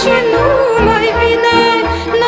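Romanian folk music: a band playing with an ornamented, wavering melody line over a steady pulse of low bass notes.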